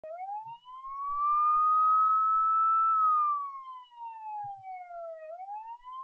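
Siren wailing: the pitch rises over about a second and a half, holds, slides slowly down, then starts rising again near the end.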